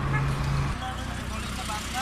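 A steady low engine hum that drops away less than a second in, leaving a lower rumble, under scattered background voices.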